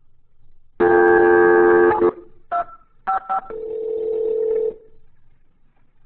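Recorded telephone call playing back: a loud dial tone for about a second, then three short touch-tone (DTMF) digit beeps as the number is dialled, then a steady ringback tone as the line rings.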